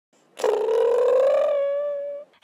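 Intro logo sound effect: a single held tone with a rapid flutter, rising slightly in pitch and lasting under two seconds.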